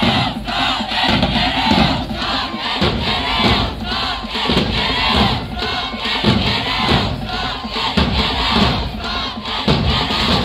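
Marching band members shouting a chant together, many voices at once, with drum hits landing under it about once a second.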